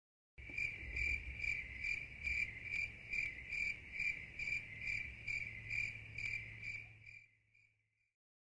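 A cricket chirping in an even rhythm, about two chirps a second, over a low steady hum. It starts about half a second in and fades out near the end.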